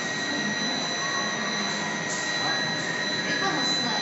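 Steady machine noise from a running LED aging test line and its power equipment, with a constant high-pitched whine over a low hum.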